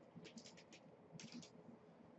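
Faint typing on a computer keyboard: a quick run of keystrokes, a brief pause, then a second quick run as a search query is typed.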